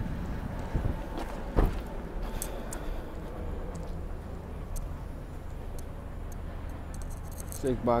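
A few knocks and bumps from a hand-held phone being carried over a steady low rumble, the loudest knock about one and a half seconds in, with a man's voice starting near the end.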